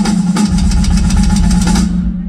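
A live rock drum solo: rapid drum hits over a steady low drone, with a deep rumble from the kit coming in about half a second in.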